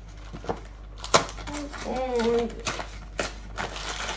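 A cardboard cake-mix box and its packaging being handled and opened: crinkling, tearing and a run of sharp snaps and taps, the loudest a little over a second in.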